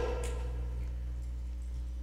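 A pause in speech: room tone with a steady low hum, as the echo of the last words fades in the first half second.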